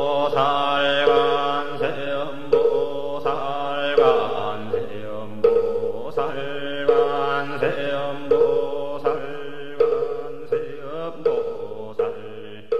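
Chanting voices in a steady, repetitive mantra, kept in time by a sharp pitched knock about every 0.7 seconds, fading a little toward the end.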